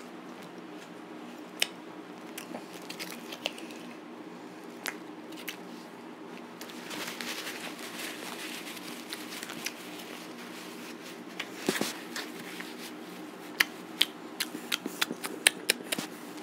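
Scattered sharp clicks and crinkling over a steady low hum, with a louder crackle about twelve seconds in.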